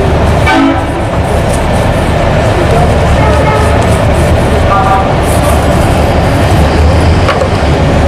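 Loud, steady rumble of street traffic, with two brief pitched toots, about half a second in and again near five seconds in.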